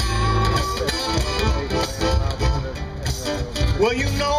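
Live blues band playing an instrumental passage: a guitar playing lead over bass and drums, with a note held briefly at the start.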